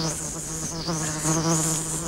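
A housefly buzzing continuously, its pitch wavering up and down as it darts about.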